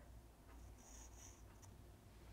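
Faint scratching of a hard H graphite pencil drawing on cold-press (medium-grain) watercolour paper, two short strokes about a second in.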